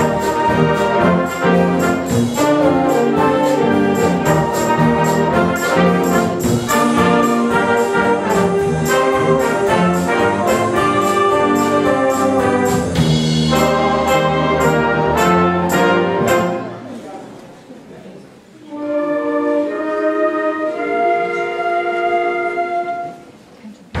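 Wind band of saxophones, trumpets, trombones, clarinets and tuba playing 1950s-style rock'n'roll with a drum kit keeping a steady beat. About 16 seconds in, the full band breaks off and the sound dies away. A quieter passage of held wind chords without drums follows.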